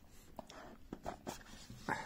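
Faint handling of a small cardboard retail box: a few light taps and scrapes as the box is opened by hand, with a slightly louder one near the end.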